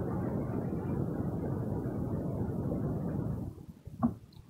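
Steady low-pitched background noise with no clear tone or rhythm, which stops about three and a half seconds in.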